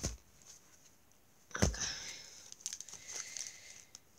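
Two knocks, the second about one and a half seconds in, followed by rustling and small crinkling clicks as a packet of football cards is handled and worked at to open it.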